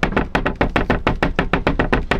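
Wooden cupboard door rattling rapidly against its frame, about nine knocks a second, shaken to show how it rattles while driving: the door has no catch to hold it shut.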